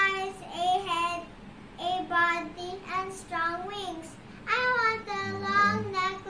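A young girl's high-pitched voice in short phrases with brief pauses between them, telling a story in a sing-song way.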